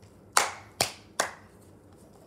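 Three loud, sharp hand claps in quick succession, a little under half a second apart, each with a short room echo.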